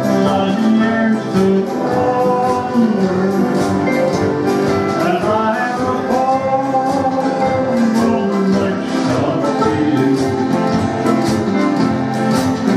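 A man singing a country song to his own strummed acoustic guitar, the strums coming in a steady rhythm under the sung melody.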